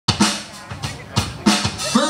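Live rock drum kit playing a handful of loud accent hits, kick drum and snare with cymbal, irregularly spaced over a held low note.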